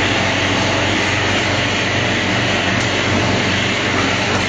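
Automatic packaging machine running in production: a loud, steady mechanical hum under an even hiss, with no pause or change.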